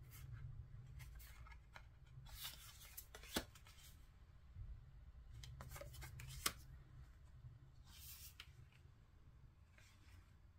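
Faint handling of tarot cards: soft slides and rustles as cards are turned and laid down, with a few light taps, the sharpest a little after three seconds and at about six and a half seconds.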